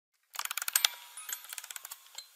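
A rapid run of small mechanical ratchet-like clicks. It starts a moment in, is loudest in the first second, and grows sparser after that.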